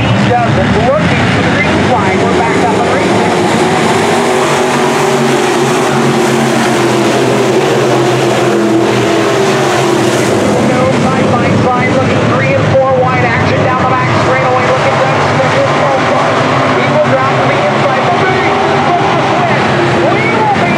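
A pack of dirt-track sport modified race cars, V8 engines running together under racing throttle as the field circles the oval. The sound stays loud and steady, with engine pitches rising and falling as cars accelerate past and lift for the turns.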